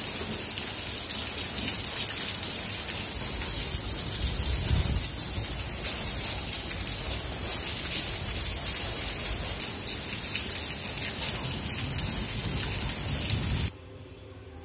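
Steady, dense rushing hiss, like heavy rain, that starts and cuts off abruptly.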